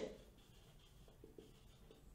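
Faint marker strokes writing on a whiteboard, with a few soft ticks in the second half.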